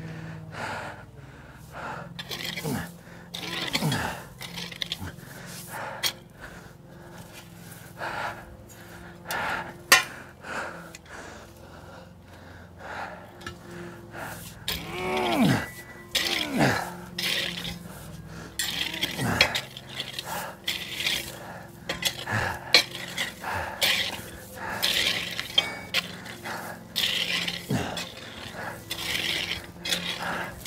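Long-handled garden tool scraping and chopping into sandy soil in repeated, irregular strokes, with occasional clinks against stones, while the digger's breath comes out in a few short grunts.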